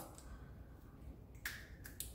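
Two small sharp clicks about a second and a half in, a moment apart, from small plastic lipstick tubes being handled.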